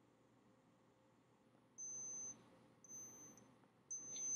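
Digital thermometer beeping to signal that its reading is finished: a run of high-pitched beeps about half a second long and about a second apart, starting about two seconds in, the first the loudest.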